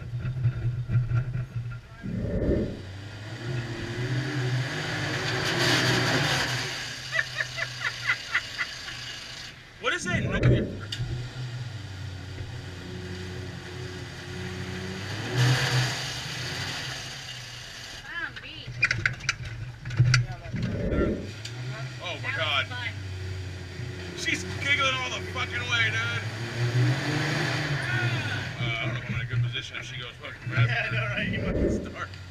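Off-road vehicle engine running, surging in revs a few times, with a few dull low thumps and indistinct voices in the background.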